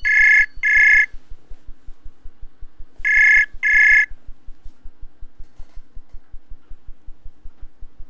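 Outgoing ringing tone of a web-browser voice call, waiting to be answered: two double rings about three seconds apart, each a pair of short high beeps.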